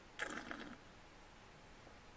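A short wet slurp from a mouthful of wine being worked in the mouth during tasting, lasting about half a second and starting a moment in; then only faint room tone.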